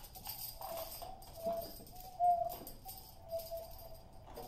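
Free improvisation by a small ensemble: a run of short, soft pitched notes in one middle register, the loudest a little past halfway, over scattered light clicks and taps.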